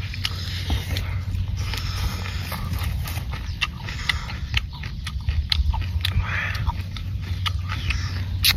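Wet chewing and lip-smacking from eating raw spicy shrimp, with scattered sharp clicks and crackles as shrimp are peeled and greens are pulled by hand from the pile.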